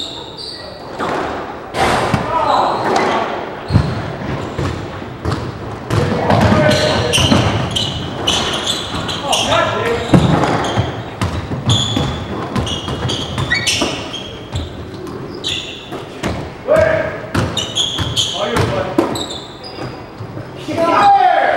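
Squash rally in an echoing court: the ball cracks off racquets and walls in irregular sharp strikes, and rubber-soled court shoes squeak on the wooden floor.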